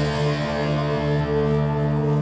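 Live band music: an electric guitar chord held steady, with effects and distortion.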